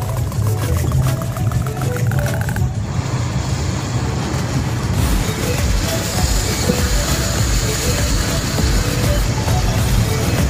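A car travelling on a wet highway: steady engine and road rumble with tyre and wind hiss, heard from inside the car. The hiss grows louder about three seconds in. Music plays over it the whole time.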